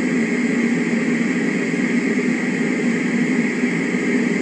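White noise machine running with a steady hiss.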